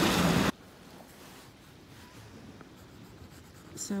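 A 4B graphite pencil scratching faintly on grey cardboard as an outline is drawn. Before it, a loud rushing noise cuts off abruptly about half a second in.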